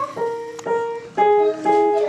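Wooden upright piano played by a young child: a slow, simple tune of about two notes a second, some struck together as two-note chords.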